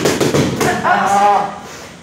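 Boxing gloves smacking focus mitts a few times in quick succession, then a drawn-out, moo-like vocal groan from a person for most of a second.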